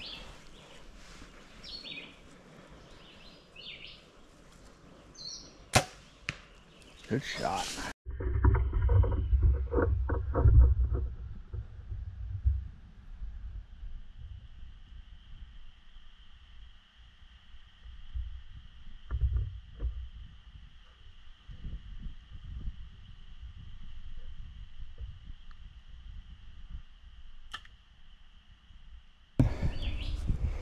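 Compound bow shot: a sharp snap of the released string about six seconds in, followed shortly by a louder burst. After that come rustling, low handling noise and a few knocks, with a steady high tone through the second half.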